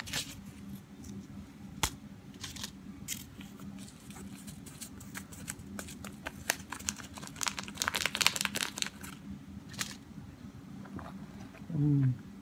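A small paper packet of crushed red pepper being torn open and shaken: crinkling, tearing paper with scattered sharp crackles. There is one louder crackle about two seconds in and a dense run of crackling around eight seconds.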